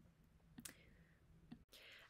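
Near silence: faint room tone with a couple of small, faint clicks.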